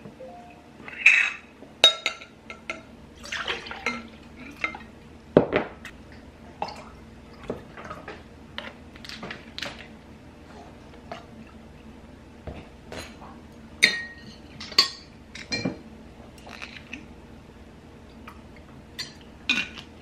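Coffee drinks being poured into a drinking glass: cold-brew concentrate, milk and coffee creamer. Short pours come between clinks and knocks of bottles, caps and cartons on the counter and against the glass, with a metal straw in the glass near the end.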